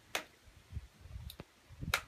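Kitchen knife cutting grilled pineapple into chunks on a plate, the blade clicking sharply against the plate three times, loudest near the end, with soft low thumps between.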